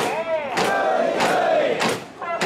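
Mikoshi bearers shouting a chant in unison, one long drawn-out call that falls in pitch. A sharp crack sounds at the start and again near the end.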